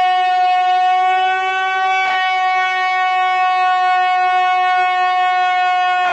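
A man's long, loud scream held on one steady pitch, with a brief catch about two seconds in.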